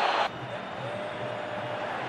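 Stadium crowd noise from a football match broadcast, loud at first and then dropping suddenly to a lower, steady level a moment in, with a faint held tone in the middle.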